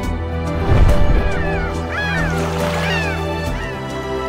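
Background music with a brief low boom about a second in, followed by a flurry of short, falling bird calls over the music for about two seconds.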